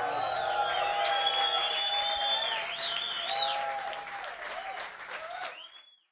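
Concert audience applauding, cheering and whistling. It fades and cuts off near the end.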